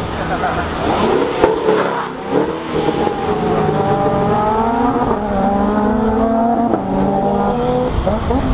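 A car engine accelerating hard through the gears: its pitch climbs steadily, drops suddenly at a gear change about halfway through, climbs again and drops once more near the end.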